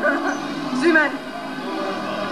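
A person's voice: a short high vocal sound that rises and falls about a second in, over a steady background hum.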